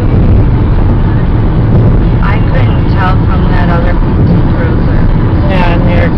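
Steady road and engine rumble inside a car's cabin at highway speed, with a voice talking over it from about two seconds in.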